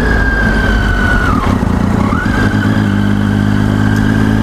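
Triumph Daytona 675's three-cylinder engine running as the bike slows in traffic, with wind rush at first. Past the halfway point the engine settles to a steady low hum. A high whine drops away about a second in and climbs back about two seconds in.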